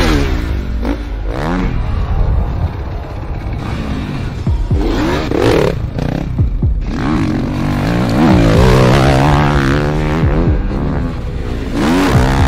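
Dirt bike engine revving hard, its pitch climbing and dropping again and again as the throttle is worked.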